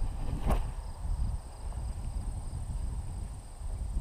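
Breeze buffeting the microphone as a low, uneven rumble, with one short sharp click about half a second in.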